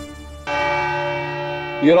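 A single bell-like chime struck about half a second in, ringing on steadily as the background music dies away. A man's voice begins right at the end.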